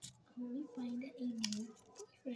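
A person humming three short low notes, the last one longer and falling. There are a few light clicks and rustles of paper figures being moved on a sheet of paper.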